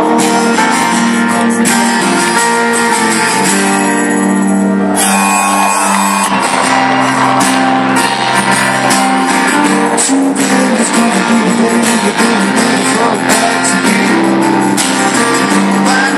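Live rock band playing at concert volume: acoustic guitar strumming over drums and keyboard. The high end drops out briefly about four seconds in, then the full band comes back.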